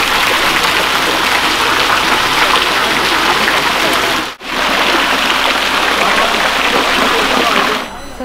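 Water pouring and splashing steadily in a garden water feature, a loud, even rush that cuts out briefly about halfway through.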